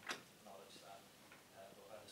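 A man speaking into a table microphone, with one sharp click just after the start.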